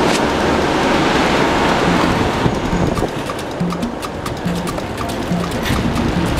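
Steady hiss of heavy rain, loudest over the first two seconds or so, with faint scattered clicks.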